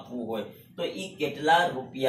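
A man speaking: continuous lecture speech with no other sound standing out.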